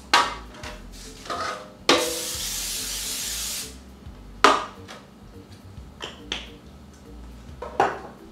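Aerosol cooking spray hissing into an aluminium baking pan in one burst of almost two seconds, about two seconds in. Before and after it come sharp clacks of the pans being handled, the loudest about halfway through.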